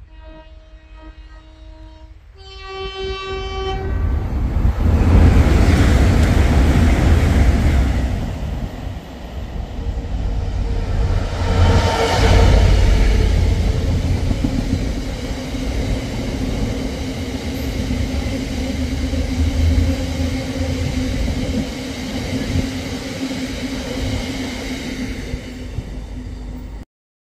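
DRS Class 66 diesel freight locomotive sounding its two-tone horn, a lower note for about two seconds and then a short higher note, before it passes at speed. After it comes a long rake of box wagons, their wheels rumbling loudly along the rails.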